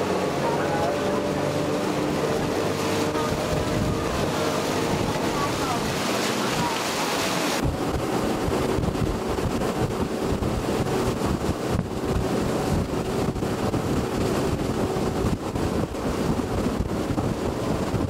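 Open tour boat running fast on a river: the rush of water from its wake and wind buffeting the microphone. A little under halfway through the high hiss drops away, leaving a lower, rumbling wind noise.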